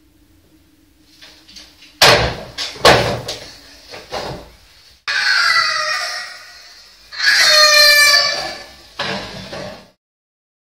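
A quick series of loud bangs and thumps about two seconds in, like things being knocked or slammed, followed by two long, high-pitched cries, the second one higher, and a short noisy burst near the end.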